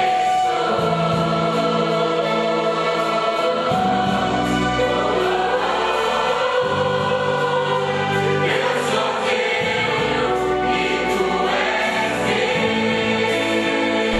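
A church worship group of men and women singing a slow song together in held notes, over a steady low accompaniment.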